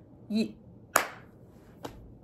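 One sharp hand clap about a second in, followed by a fainter click near the end.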